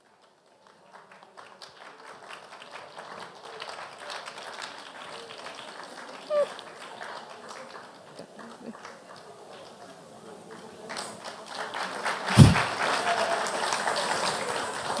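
Audience applauding, starting about a second in and growing louder toward the end, with one sharp low thump near the end.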